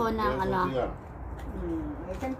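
A person's voice: a short pitched utterance in the first second, then a lower, brief hum near the end.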